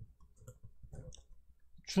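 A few faint, irregular clicks of a computer mouse as chart screens are switched in trading software.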